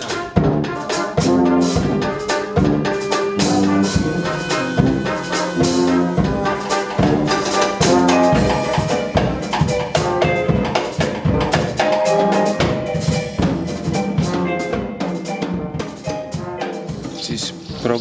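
Klezmer wind band, brass and saxophones, playing a tune over a drum kit, with sustained horn notes and frequent snare drum strokes played with sticks.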